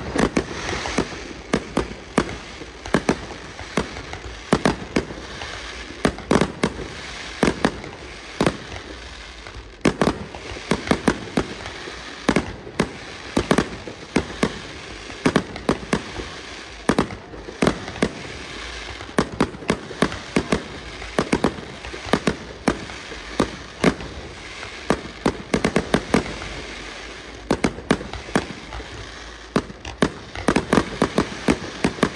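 Fireworks display: a rapid barrage of aerial firework bursts, with loud, sharp bangs coming several a second over a constant rush of noise.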